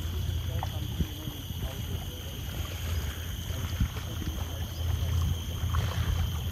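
Wind buffeting the microphone with a steady low rumble, under a continuous high-pitched drone of insects from the mangrove jungle, with small splashes of paddles in the water.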